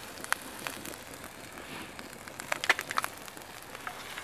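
Wood campfire crackling with scattered sharp pops, several of them close together about two and a half seconds in, over a faint steady sizzle of onions frying in a pan on the embers.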